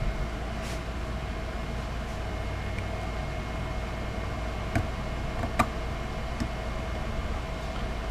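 Steady low background hum with a few faint short clicks and scrapes from a hobby knife blade trimming around a guitar's truss rod nut and plug, the sharpest two about five seconds in.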